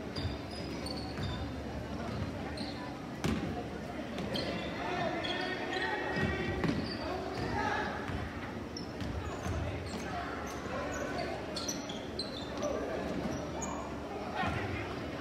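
Basketball dribbled on a hardwood gym floor during play, in a large echoing hall, with a sharper knock about three seconds in. Spectators' voices run through it.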